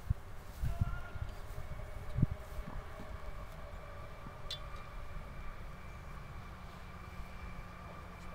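Open-air ambience: a low rumble with a few dull thumps in the first couple of seconds, over a faint steady hum that runs throughout.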